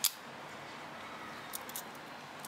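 A single sharp metal click as the scissors of a Century Apollo multitool (a Victorinox Huntsman copy) snap shut into the handle. A few faint, light clicks follow near the end as the tools are handled.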